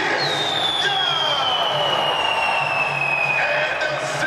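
Arena introduction sound effect over crowd noise: a long whistle-like tone that falls slowly in pitch for about three seconds and stops near the end, with the public-address announcer beneath.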